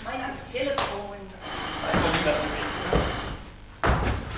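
A telephone bell ringing for about two seconds in the middle, with actors' voices at the start and low thumps on the stage floor.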